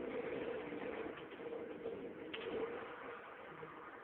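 A car's engine and road noise as the car loses power from running out of fuel, played from a television and picked up by a phone's microphone, with a single brief click a little over two seconds in.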